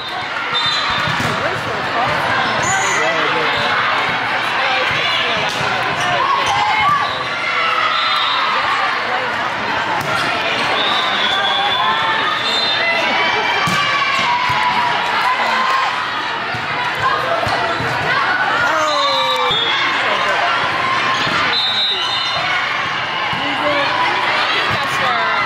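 Indoor volleyball play echoing in a gymnasium: the ball being struck, with short high squeaks that fit sneakers on the court. Players and spectators talk and call out throughout, no words standing out.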